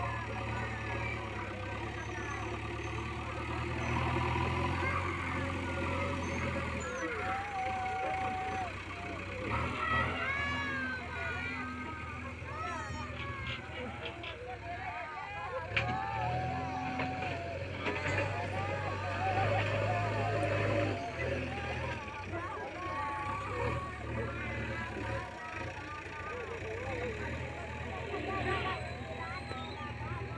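JCB backhoe loader's diesel engine running steadily while its front loader bucket pushes soil.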